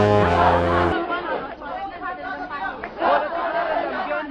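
Music with steady held notes cuts off about a second in. It gives way to a crowd of many people talking at once, an outdoor gathering's chatter.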